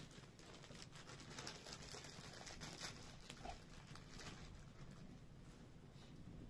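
Faint, scattered crackles and clicks from a small wood campfire burning, mixed with light handling sounds, over a low steady background rumble.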